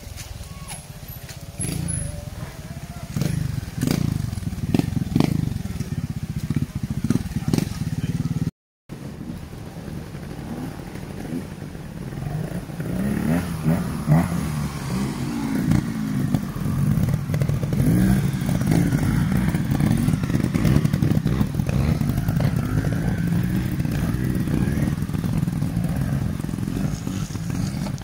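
Small off-road motorcycle engine running on a muddy trail, its revs rising and falling over and over, with knocks and rattles from the bike over rough ground. The sound cuts out for a moment about a third of the way through.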